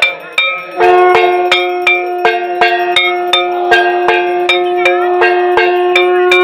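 Metal worship bells struck rapidly and evenly, about four ringing strikes a second. From about a second in, a long steady tone is held under them without a break.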